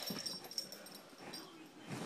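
Faint breathing and snuffling of a small dog right against the phone's microphone, its fur brushing the phone.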